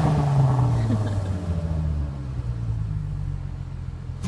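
Volkswagen Golf R32's 3.2-litre VR6 engine through a Milltek full exhaust, settling back to idle after a rev. The low note dips slightly in the first second, then holds steady while slowly getting quieter.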